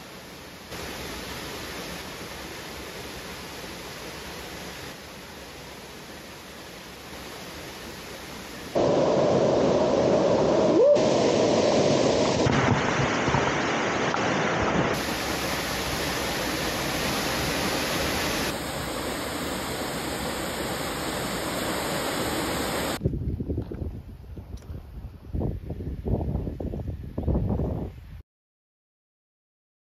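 Waterfall rushing into a rocky plunge pool: a steady, noisy rush of falling water that grows much louder about nine seconds in, close under the falls. In the last few seconds the sound turns choppy and uneven.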